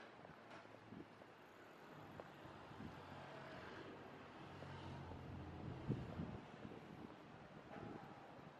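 Faint street traffic sound: a car engine's low hum grows over a few seconds and stops about six seconds in. A single sharp knock comes just before it stops.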